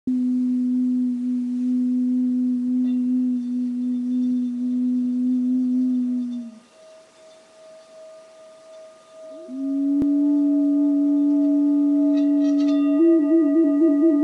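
A clay vessel flute holds a steady low note, breaks off about halfway, then comes back with a short upward slide and trills between two notes near the end. Behind it, a brass singing bowl being rubbed around its rim with a wooden striker rings with steady higher tones.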